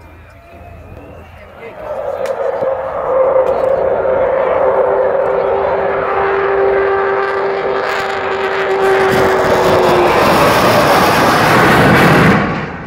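Avro Vulcan XH558's four Rolls-Royce Olympus jet engines growing louder as the bomber approaches: the Vulcan howl, a steady howling tone under the jet roar, which swells to its loudest near the end.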